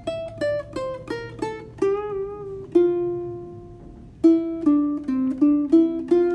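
Ukulele picked one note at a time, walking down the F major scale in open position from the high F to the F an octave below. The low F is held for over a second, then a few quicker, lower notes follow near the end.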